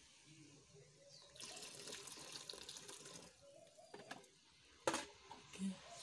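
Potash solution poured from a plastic bowl into a pot of hot meat stock, a splashing pour of about two seconds starting a little over a second in. A single sharp knock comes near the end.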